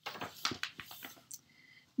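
A page of a hardcover picture book being turned by hand: paper rustling and sliding with small clicks for about a second and a half, then fading.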